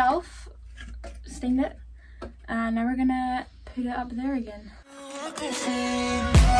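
A woman's voice singing slow, drawn-out notes in a background pop song, over a low steady bass hum that drops out about five seconds in.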